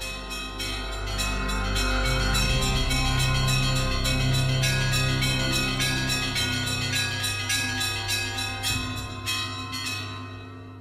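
Opening theme music built on a rapid peal of church bells, many strikes a second ringing over a steady low drone.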